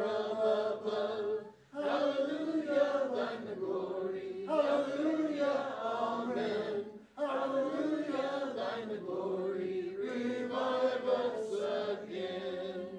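A church congregation singing a hymn together, line by line, with short breaths between phrases about two seconds and seven seconds in.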